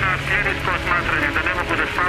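Men speaking Serbian in an archival recording that sounds narrow and muffled, over a steady low hum.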